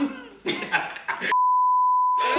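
People laughing and talking for about a second, then a single steady, high-pitched beep tone starts and holds: the test tone that goes with TV colour bars, used as an editing transition.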